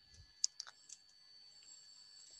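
A few computer-keyboard keystrokes typing a short word, the loudest click about half a second in.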